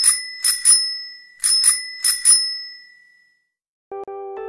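A small, bright, high-pitched bell rung as a logo sound effect, struck about seven times in quick pairs over the first two and a half seconds, its ringing dying away.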